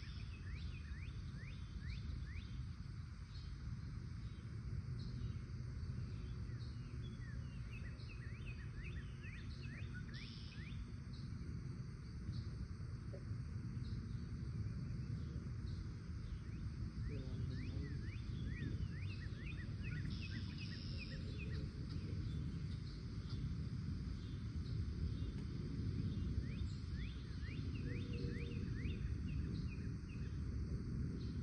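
Small birds chirping in quick runs of short, sharp notes, again and again, over a low, steady rumble.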